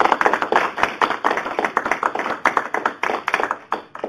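Audience applauding, dense hand-clapping that dies away just before the end.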